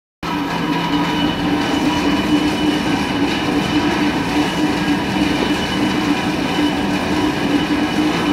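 Cherry-Burrell granulator running steadily as it grinds lumps of white material into powder: a loud, even machine whir with a few held tones.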